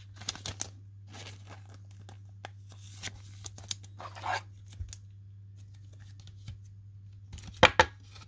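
Trading card and clear plastic card holder being handled: scattered rustles and small plastic clicks, with a louder cluster of sharp clicks near the end.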